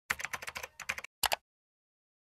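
Computer keyboard typing sound effect: a quick run of key clicks for about a second, then a short double click like a mouse click.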